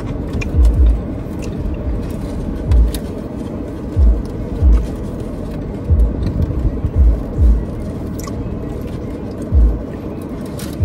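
Background music playing over close-up eating sounds: irregular low thumps and small clicks from chewing.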